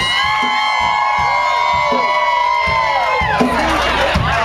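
A harmonica played into a hand-cupped microphone through the PA, holding one long high note that bends down and stops a little past three seconds in, while the crowd whoops.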